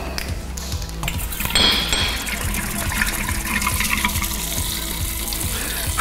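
Rum pouring in a steady stream from an upturned bottle into a glass drink dispenser, with faint background music.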